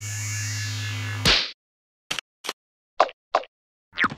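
Cartoon sound effects: a steady electronic hum with falling high sweeps lasts about a second and is cut off by a sharp impact. After a pause come four short, quick blips.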